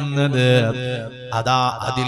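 A man's voice chanting in a drawn-out, melodic reciting style rather than plain speech.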